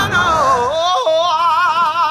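A high voice singing with heavy vibrato: a falling, wavering phrase, then a held warbling note from about a second in.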